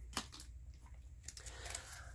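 Faint handling of plastic wax-melt clamshells: one light click near the start, then soft quiet fumbling, over a low steady hum.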